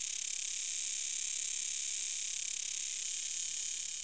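A chorus of periodical cicadas singing: a steady, high-pitched buzzing drone that holds even throughout.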